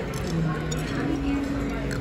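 Restaurant background: a murmur of voices with a few light clinks of cutlery or dishes.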